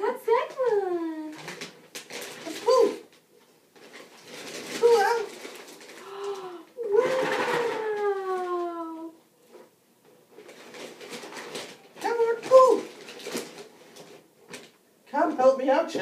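Wrapping paper crinkling and tearing as a present is unwrapped by hand, in short crackles and rustles. Over it come several drawn-out voice sounds that fall in pitch, like long 'ooh's.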